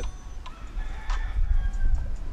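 A chicken calling faintly, a few short pitched calls over a steady low rumble.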